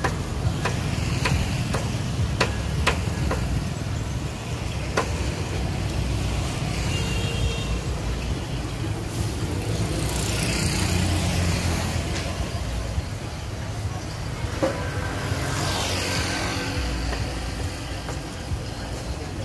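Road traffic going past: a steady low rumble, one vehicle swelling past about ten seconds in and another engine note around fifteen seconds in, with a few sharp ticks in the first five seconds.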